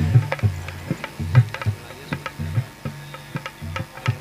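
Hand-drum accompaniment in a qawwali rhythm: deep bass strokes in a steady repeating pattern, with sharp lighter strokes between them.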